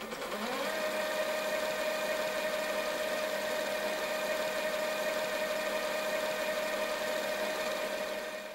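A steady electronic drone: one held mid-pitched tone over a hiss with many fainter steady tones, which glides up into place in the first second.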